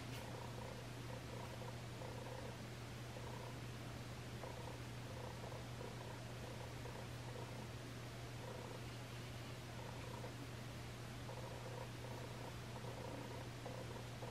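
A steady low hum, with faint higher tones that come and go.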